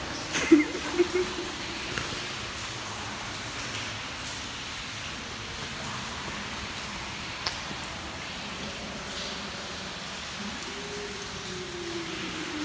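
Steady hiss of water dripping and trickling inside a rock railway tunnel, with a few sharp ticks of drips or footsteps on the tunnel floor.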